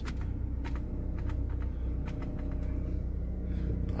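Hummer H3 engine idling steadily, heard from inside the cabin, with a few light clicks from the climate-control knob being turned. The air conditioning is switched on but does not engage, so no compressor kicks in.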